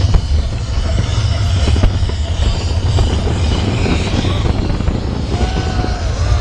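Fireworks display barrage: many shells bursting in quick succession, the overlapping bangs and crackling merging into a continuous rumble.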